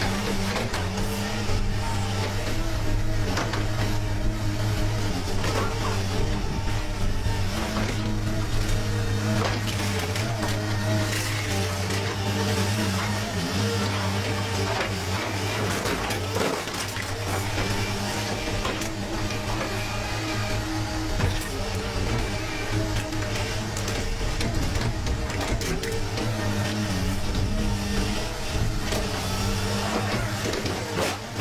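Diesel engine of a demolition excavator droning steadily under load while its hydraulic grab tears and crushes a scrapped car body, with scattered crunches and scrapes of sheet metal.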